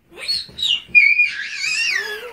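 A young child squealing in high-pitched shrieks: two short squeals, then a longer wavering one from about a second in.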